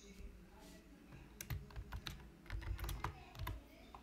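Computer keyboard keys being typed, a faint quick run of about half a dozen keystrokes about halfway through, entering a short password.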